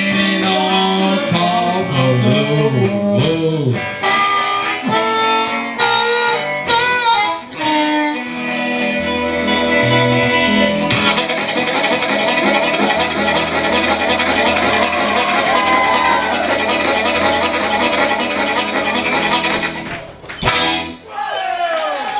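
Harmonica and electric guitar playing an instrumental passage of a country song, settling about halfway through into a long held chord that stops about twenty seconds in.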